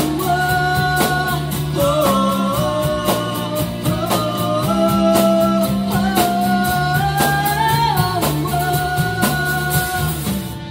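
Live band music: a lead melody of long held, gliding notes over guitar, bass and drums.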